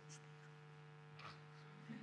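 Near silence with a steady, faint electrical hum.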